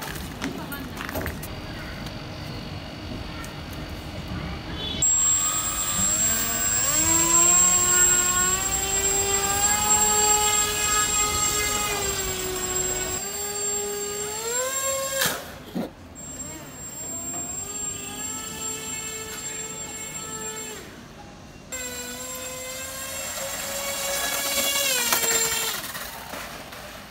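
Electric motor and propeller of a small homemade RC ground-effect craft whining under power. The pitch rises and falls with the throttle, with a thin steady high whine alongside. It stops briefly twice and starts again.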